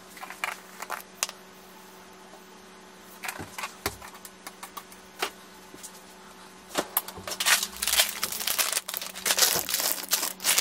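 Plastic food packets crinkling and rustling, with light clicks and knocks, as ingredients are spooned into a blender cup of ice. The crinkling grows busier and louder for the last three seconds.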